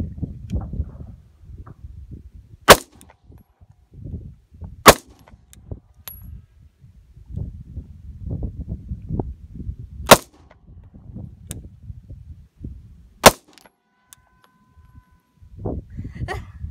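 Sig P320 pistol firing four single shots, one at a time, a few seconds apart, with a low rumble between shots.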